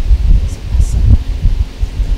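Wind buffeting the microphone: a loud, uneven low rumble that keeps swelling and dipping.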